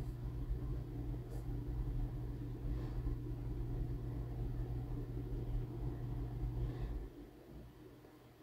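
A steady low mechanical hum, like a motor or appliance running, that shuts off about seven seconds in, with a few faint light rustles and ticks of hair being twisted and clipped.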